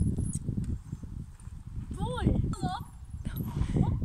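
Wind buffeting the phone's microphone in a steady low rumble, with a brief high-pitched voice calling out about two seconds in.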